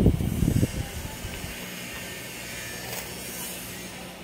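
Sheets of paper being flipped over close to the microphone, a loud rustling flap in the first second, then only a steady, quieter background hum.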